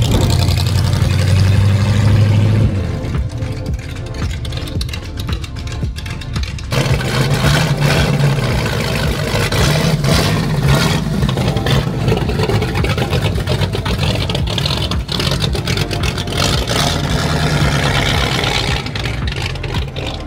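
Hot rod engines running loud as the cars pull away, strongest in the first few seconds, easing off briefly, then building again and holding.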